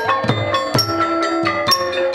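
Traditional Khmer ensemble music: a wooden xylophone (roneat) plays a quick run of ringing notes over a steady rhythm of low, hand-struck strokes on a rattan-laced barrel drum.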